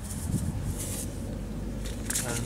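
Hand working a dry clay, soil and seed mix in a plastic basin: two brief gritty rustles over a steady low outdoor rumble.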